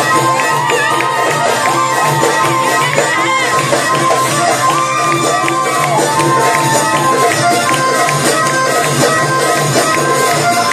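Live Arabic band playing a baladi: an ornamented melody that slides between notes, over a steady hand-drum rhythm.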